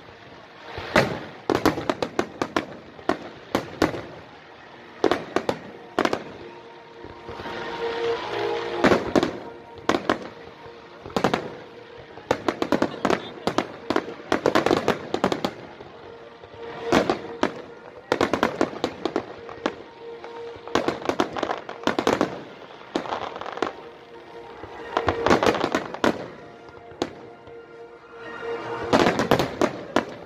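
Fireworks display: aerial shells bursting in irregular volleys, dozens of sharp bangs, some single and some in quick clusters, with a thicker barrage about eight seconds in.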